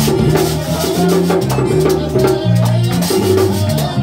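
Live merengue típico band playing: diatonic button accordion with drum and rattling percussion keeping a steady, quick dance beat over stepped low bass notes.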